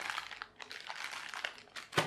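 Thin clear plastic bag crinkling and crackling as it is pulled open by hand, with one sharp click right at the end.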